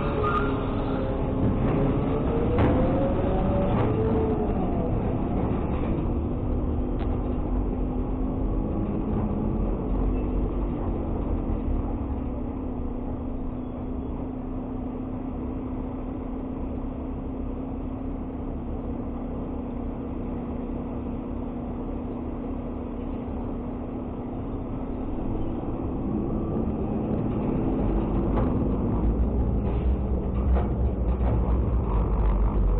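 Trash truck's D13 diesel engine pulling away under load: the revs rise and fall through the gears, settle to a steady drone midway, then climb again near the end.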